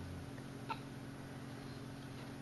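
A baby being spoon-fed cereal makes one faint, short mouth sound about two-thirds of a second in, over a low steady room hum.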